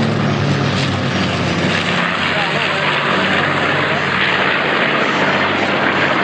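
North American B-25 Mitchell bomber's twin radial piston engines and propellers droning loudly as it flies past, a steady, unbroken sound throughout.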